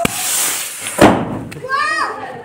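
A lit Diwali firecracker hissing briefly, then going off with one loud bang about a second in and leaving a cloud of smoke. A high voice calls out just after the bang.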